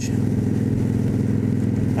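Cruiser motorcycle engine running steadily at cruising speed, heard from the bike while riding, with wind and road noise over it. The pitch stays level, with no revving or gear change.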